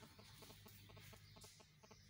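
Near silence: faint room tone with a low steady hum and a run of faint, quick, repeated short sounds.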